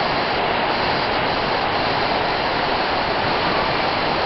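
Steady, unbroken rushing of a river running high, its water over the banks.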